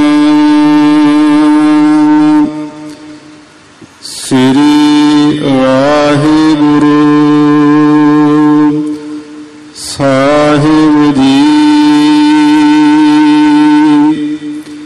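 A man's voice chanting Gurbani in long held notes: three drawn-out phrases of a few seconds each, wavering slightly, with short breaks between them.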